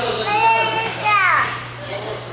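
Young students' voices chattering and exclaiming, with one high voice sliding sharply down in pitch just over a second in, over a steady low hum.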